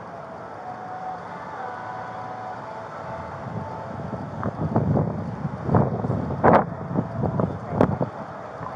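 Handling noise on a body-worn camera: wind and steady street noise on the microphone, then from about halfway a run of knocks and rubs as clothing and hands brush the camera, ending in two sharp clicks near the end.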